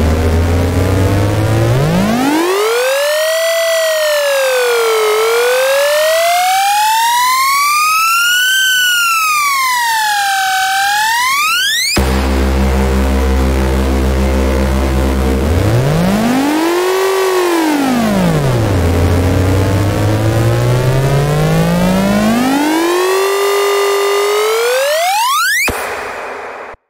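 Two synth riser sound effects, one after the other. Each is a gliding synth tone that starts low, swoops up and down in pitch, then shoots steeply upward and cuts off suddenly. The first ends about halfway through and the second near the end.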